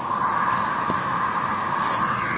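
Vacuum cleaner on a long hose drawing air through a Lego paddle turbine: a steady airy whir that switches on abruptly and holds even.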